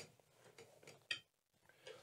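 Near silence with a few faint short clicks, the clearest about a second in.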